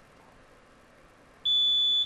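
Quiz-game buzzer signalling that a contestant has buzzed in to answer: a single steady, high electronic beep that starts suddenly near the end and holds, after quiet room tone.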